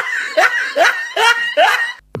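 A person laughing in short, high-pitched bursts, each one rising in pitch, about two to three a second.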